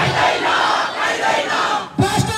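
Large crowd shouting together, a dense mass of many voices with no single voice standing out; the noise drops away sharply for a moment just before the end.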